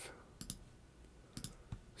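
A few faint computer-mouse clicks, in quick pairs: one pair about half a second in, then two or three more about a second and a half in, as menu items are selected.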